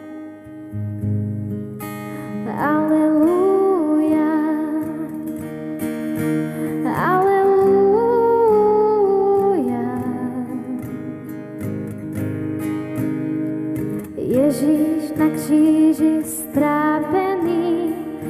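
A woman singing live to her own acoustic guitar accompaniment, in three sung phrases over steady guitar chords, the middle phrase on long held notes.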